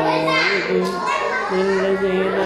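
A man chanting Quran recitation in Arabic, holding long drawn-out notes that step from one pitch to another.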